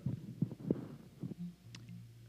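A few soft low thumps and rubbing from a headset microphone being touched, followed by a faint steady low hum.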